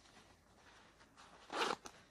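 A zipper on a faux-leather vest being worked by hand, with one short rasp of the pull about a second and a half in.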